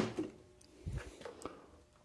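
Faint knocks and handling sounds of a cast-iron Dana 44 differential carrier being set in place and let go on a workbench, with a few light taps about a second in.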